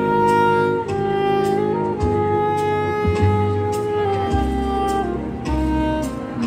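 Saxophone playing a slow melody of long, held notes that change every second or two, over a backing accompaniment with low sustained bass notes.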